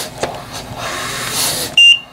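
Trilogy 100 ventilator pushing a breath with a rush of air, with a click just after the start. Near the end comes a short, loud, high-pitched alarm beep: the high pressure alarm, set off as airway pressure goes above its 40 cmH2O limit.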